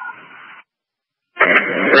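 Two-way radio scanner between fireground transmissions: the end of one transmission trails off in a short hiss of static that cuts off abruptly, a moment of dead silence follows, then the next transmission keys up with static and a man's voice begins near the end.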